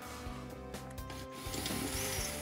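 Cordless drill boring out a rivet in a snowmobile's rear suspension arm bracket, the bit grinding against the metal; it gets a little louder about three-quarters of the way in.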